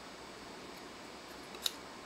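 A single short click about one and a half seconds in, from the parts of a Metal Build Gundam Astray Gold Frame Amatsu Mina figure being handled, over faint room hiss.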